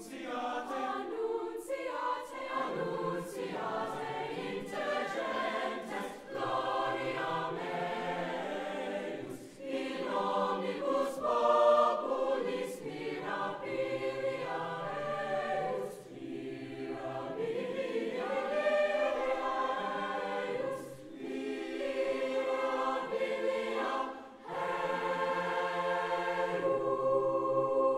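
High school choir singing in several parts, holding chords with short breaks between phrases.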